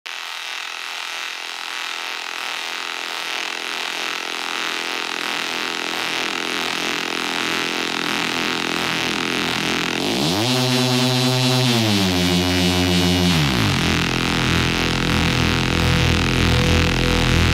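Intro of a techno track: a hissy, sustained electronic texture slowly swells in loudness. About ten seconds in, a buzzy, engine-like synth tone sweeps up, holds, and slides back down, and a low bass comes in near the end.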